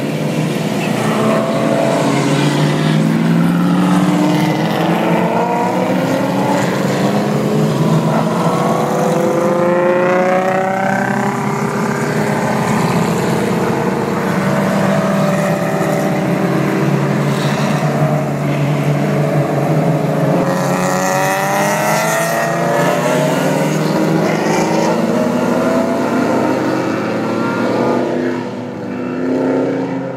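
Several race cars at speed on a circuit, their engines overlapping, each engine's pitch rising and falling as the cars come and go. The sound stays loud throughout, dipping briefly near the end.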